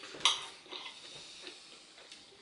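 Knife and fork clinking and scraping on a dinner plate as food is cut: one sharp clink about a quarter of a second in, then a few softer taps.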